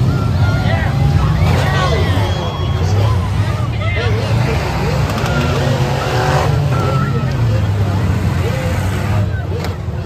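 A field of demolition-derby cars running together with their engines revving, under a crowd of spectators shouting and cheering; a sharp bang near the end.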